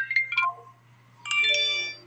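Smartphone alert sounds: a quick run of chiming notes falling in pitch ends about half a second in, then a short, bright notification chime sounds a little over a second in, announcing an incoming text message.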